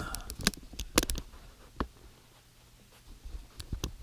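Handling noise from a camera being moved and set down: a few scattered knocks and rustles, the sharpest about a second in and a small cluster near the end.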